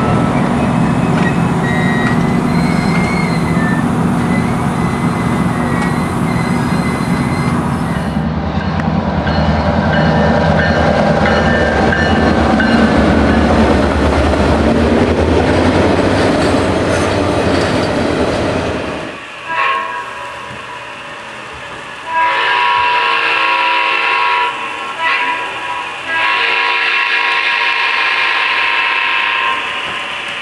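A freight train rolling past, with a steady rumble of wheels on rail and some wheel squeal, fading out about two-thirds of the way in. Then a diesel locomotive air horn sounds a long blast, a short one and another long blast, with a Doppler shift in pitch.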